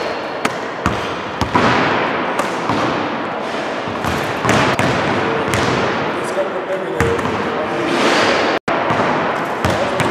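Basketballs bouncing on a wooden gym floor, repeated irregular thuds that echo around a large sports hall, with players' voices in the hall.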